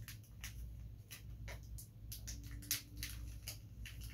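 Faint crinkling and rustling of a small plastic surprise packet handled in the fingers and opened, a scatter of light crackles.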